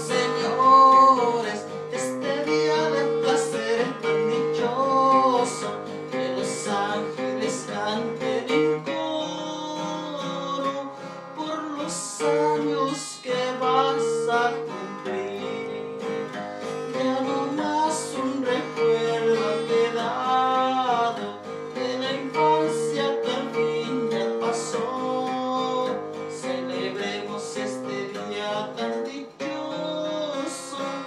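A small acoustic guitar strummed steadily, with a melody line bending above it, in a continuous song accompaniment.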